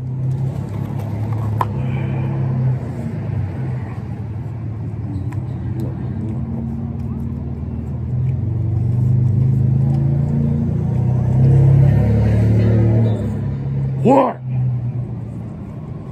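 Low, steady rumble of a vehicle engine running close by. It grows louder past the middle and eases near the end, where a short rising sound cuts in.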